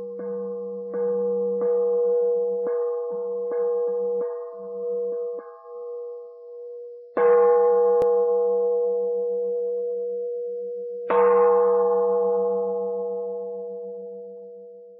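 A struck metal bell, hit about seven times in the first five seconds, then twice more, louder and about four seconds apart, each stroke ringing on and slowly fading with a pulsing low hum beneath the tone.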